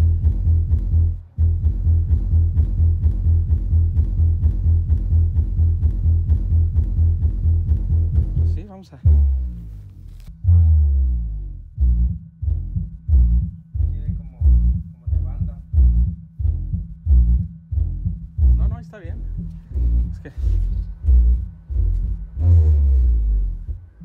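Music played loud through a DJ sound system with no tweeters, the deep bass from the bass cabinet dominating and the treble thin. The track changes about nine seconds in, from a fast dense bass beat to deep bass hits about twice a second.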